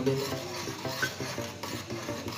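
A metal spoon stirring hot milk tea in an aluminium saucepan, clinking against the pan.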